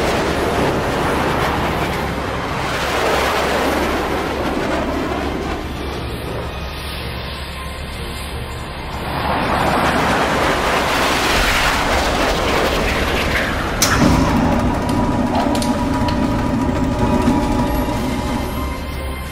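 Fighter jet engine roar that swells and fades in long waves as the aircraft take off and pass overhead. About fourteen seconds in there is a sharp crack, and a steady droning hum with a clear pitch follows it.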